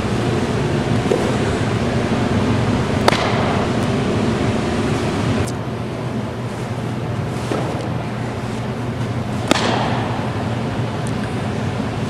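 Two sharp smacks of a softball into a catcher's mitt, about six seconds apart, each ringing briefly in a large indoor hall, over a steady rushing noise with a low hum that eases a little about halfway through.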